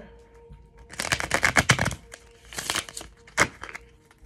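Tarot deck shuffled by hand: a rapid run of card clicks lasting about a second, then a shorter flurry and a single sharp snap of cards near the end.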